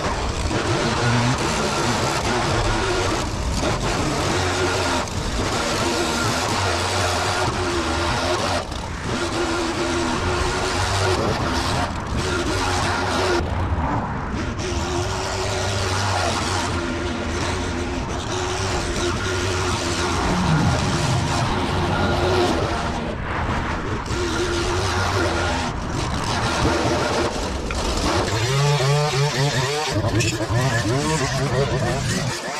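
Petrol handheld leaf blower running steadily at high throttle, blowing grass clippings off lawn and footpath; the sound changes abruptly several times. Near the end a petrol string trimmer takes over.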